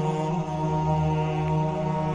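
Background music: a slow chant with long, steady held notes.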